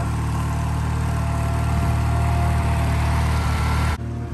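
Garden tractor engine running steadily under load as it tows a four-wheel garden cart loaded with firewood.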